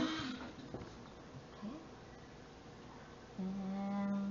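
A pencil being sharpened in a small tabletop sharpener, the grinding trailing off in the first half-second. Near the end comes a steady hummed tone from a woman's voice, about a second long.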